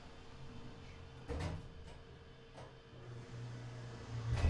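Otis Gen2 elevator's single-slide car door closing, shutting with a thud about a second and a half in, followed by a couple of light clicks. A steady low hum then grows near the end as the traction elevator gets under way.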